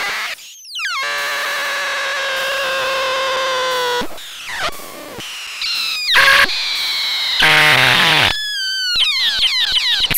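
Eurorack modular synthesizer (IFM Fourses, Denum and Dunst with a Mannequins Mangrove) making noisy, metallic electronic tones that cut in and out abruptly as the controlling fader is moved. A held multi-tone sound lasts about three seconds, followed by short bursts and falling pitch sweeps near the end.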